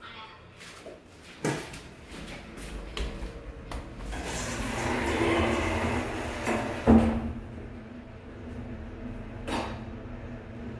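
ThyssenKrupp Dongyang passenger elevator doors running shut under their door motor, ending in a sharp thump as they meet about seven seconds in. This is followed by the steady low hum of the car as it prepares to move off, with a click a couple of seconds later.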